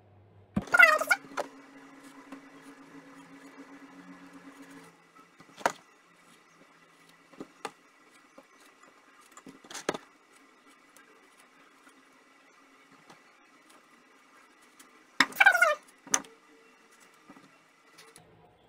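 Quiet kitchen handling: a few light clicks of a knife and strawberries against a china plate while strawberries are being cut, with a faint steady hum for the first few seconds. Two brief bursts of voice stand out, one near the start and one near the end.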